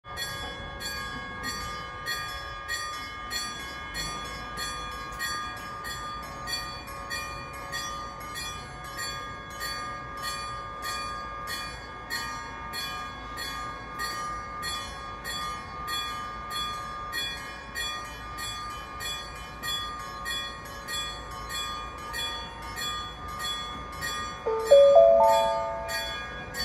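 Railway warning bell ringing in a fast, steady repeat while a tram approaches the station. Near the end a louder chime of rising notes sounds from the platform speaker.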